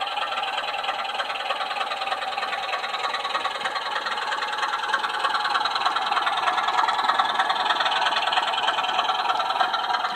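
Model diesel locomotive with a DCC sound decoder running its engine sound while hauling a freight train, mixed with the fast rattle of the model wagons' wheels on the track. It grows a little louder in the second half as the wagons pass close.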